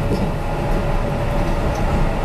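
Kintetsu 5820 series electric train heard from inside the car while running: a steady rumble of wheels on rail with a steady humming tone over it.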